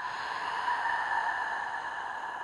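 A woman's long open-mouthed exhale, a deliberate sigh-out breath used for relaxation. It is a steady breathy rush that slowly fades.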